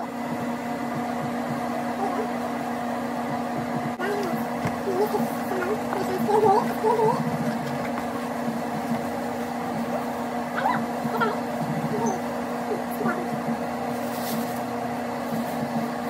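Bathroom exhaust fan running with a steady hum, under faint, low voices.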